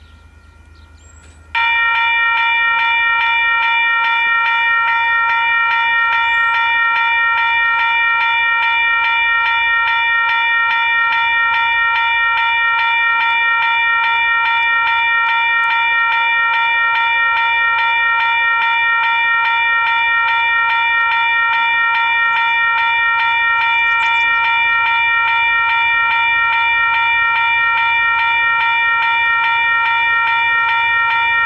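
Level crossing warning bell starts about a second and a half in and rings loudly and steadily with fast, even strokes. The approaching train is heard faintly as a low rumble underneath.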